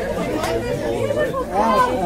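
Several people talking at once: background chatter.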